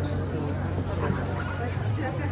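Chatter of a dense crowd of people in an open square, with a few short, high yelping cries among the voices.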